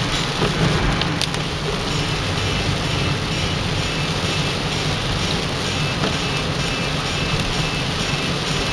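Heavy rain pattering on a car's windshield and roof, mixed with tyre hiss on the wet road and the car's running noise, heard from inside the cabin as a steady wash of noise. There are a couple of faint clicks about a second in.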